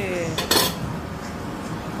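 Cutlery clattering against a ceramic plate at the table: one sharp clink about half a second in, then quieter tableware noise.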